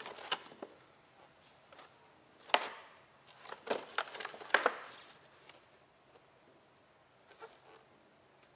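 Plastic packaging bag crinkling and crackling as gloved hands handle and turn it over, with several sharp crackles over the first five seconds and a faint one near the end.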